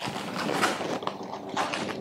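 Rustling and scraping of a blood pressure monitor's fabric arm cuff being wrapped and adjusted around the upper arm, with a few small clicks of handling.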